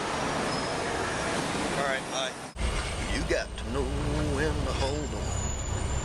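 Suitcase wheels rolling over pavement, a steady rattling noise that cuts off sharply about two and a half seconds in. After that comes the low steady rumble of a moving car heard from inside the cabin, with a voice talking over it.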